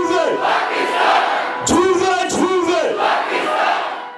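Large crowd in the stands cheering and shouting a chant together in rising-and-falling phrases of three shouts, one phrase ending just after the start and another about two seconds in.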